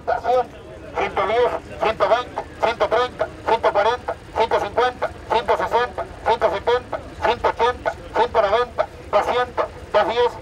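An auctioneer's rapid bid chant in Spanish, calling rising prices in quick succession through a microphone and loudspeaker.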